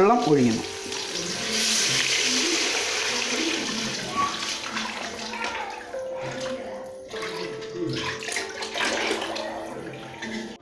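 Water poured in a steady stream from a steel pot into a large aluminium cooking pot of hot oil and masala, splashing and gushing. It is loudest in the first few seconds and gets softer as the pot fills.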